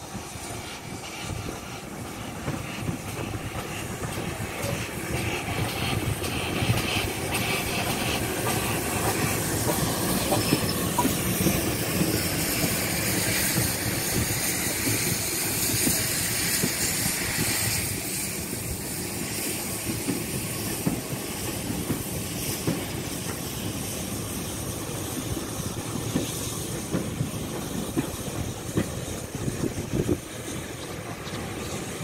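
Steam-hauled passenger train rolling past at low speed, the coach wheels running over the rails with steam hissing. It grows louder over the first dozen seconds as the train comes alongside, then settles as the coaches roll by.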